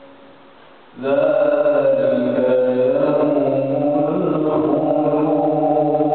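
A solo male voice reciting the Quran in a melodic chant. After about a second of the previous phrase dying away, he begins a new phrase and holds it as one long line whose pitch rises and falls.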